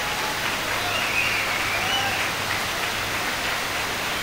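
Audience applauding, an even, steady clapping.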